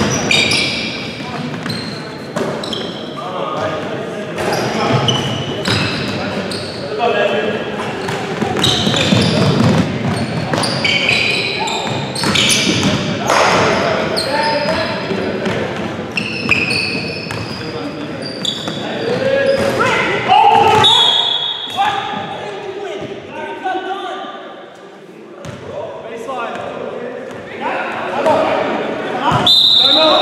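Live basketball play in a large gym: a basketball bouncing on the hardwood floor, sneakers squeaking and players calling out, all echoing in the hall.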